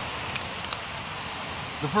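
A small cardboard box being opened by hand: a few light clicks and rustles of the flap, over a steady outdoor hiss.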